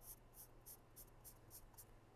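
Pen scratching on paper in quick, faint hatching strokes, about four short strokes a second.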